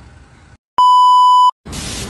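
A single steady, loud electronic beep lasting under a second, starting and stopping abruptly like an edited-in censor bleep. Near the end a loud hissing sound cuts in.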